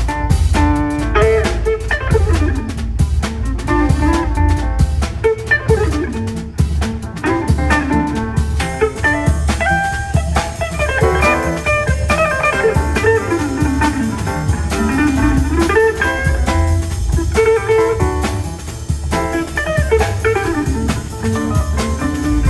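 Live jazz quartet swinging an up-tempo tune: electric jazz guitar carries the lead line over bass, piano and drum kit.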